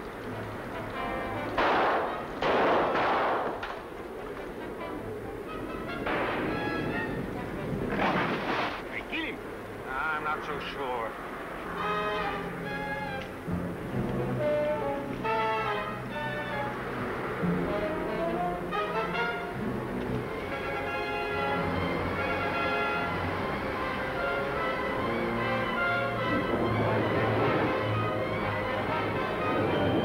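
A few loud rifle shots in the first nine seconds of an old film soundtrack, followed by a dramatic orchestral score.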